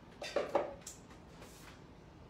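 A short run of rustling and clattering in a cooking pan, loudest about half a second in, as a pile of roughly chopped baby spinach is added to the pan.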